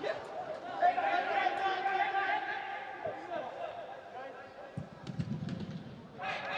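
Footballers' shouts and calls echoing around a large indoor sports hall, with a few sharp thuds of the ball being kicked, the loudest a little under a second in.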